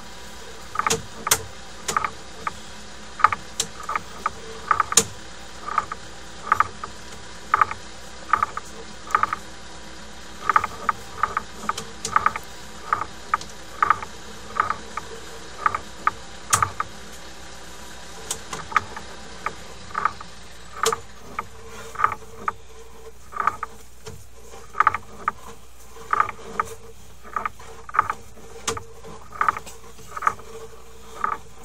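Sewer inspection camera's push cable being fed into the line, its reel and cable clicking about twice a second over a steady low hum.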